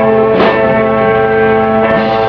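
Live rock band playing a held chord on guitar and bass, with two drum crashes, one about half a second in and one near the end.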